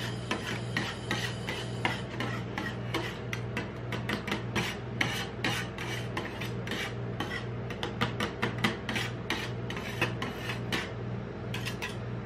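Steel spatulas scraping and chopping frozen 7UP ice cream mixture on a cold steel rolled-ice-cream plate: quick, rasping strokes that come thick and fast, then stop briefly near the end.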